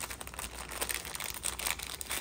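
A small clear plastic bag of metal safety pins crinkling as hands open it and pull pins out, with irregular small crackles throughout.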